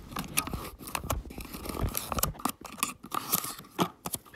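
Paper and cardboard packaging of an Apple adapter box being handled and opened by hand, with a folded paper insert pulled out: a run of irregular crinkles, scrapes and small clicks.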